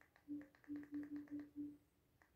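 Android TV's menu navigation sound, a short, faint low tone with a click, repeated six times in quick succession as the settings list is stepped down one item at a time.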